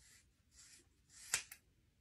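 Household plastic-handled scissors, not hairdressing shears, cutting through a thick lock of hair: a short crunchy shearing noise that ends in one sharp click of the blades closing about a second and a half in, followed by a smaller click.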